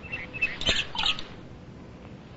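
A few short, high-pitched chirps and a single sharp click, then faint steady hiss.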